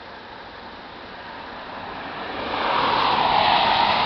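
A passing vehicle: a steady rushing noise that swells over a couple of seconds, is loudest near the end and drops slightly in pitch as it begins to fade.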